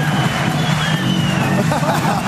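Arena crowd noise: many voices shouting and cheering over background music.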